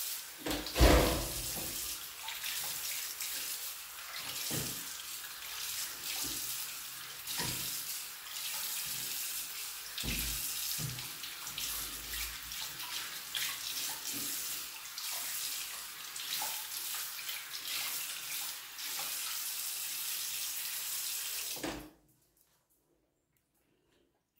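Bathroom sink tap running steadily while water is splashed onto a face to rinse off exfoliating gel, with irregular splashes, the loudest about a second in. The water sound cuts off suddenly near the end.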